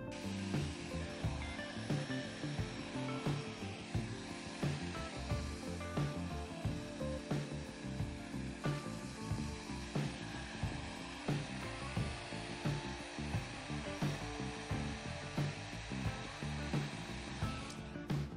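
Heat gun blowing hot air in a steady rush, over background music with a regular beat.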